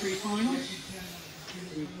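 A man's voice speaking in the background, with a faint high whine that rises in pitch through the first half.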